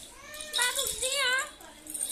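A short vocal cry of about a second in the middle, its pitch wavering up and down.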